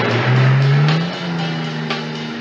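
1967 Plymouth Barracuda's engine revving as the car accelerates away, its pitch rising for about a second, then briefly dipping and holding steady, under a music score.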